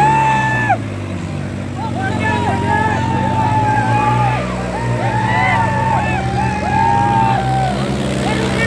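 New Holland 3630 tractor's diesel engine running steadily, with a crowd of men cheering over it in long drawn-out shouts that come again and again, the loudest right at the start.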